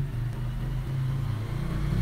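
A steady low hum or rumble in the background, with nothing else standing out.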